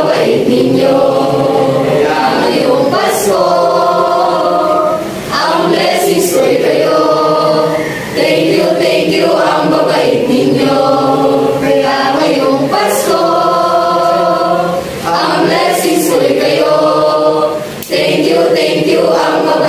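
A mixed group of young male and female voices singing together as a choir, in long held phrases broken by short breaths every few seconds.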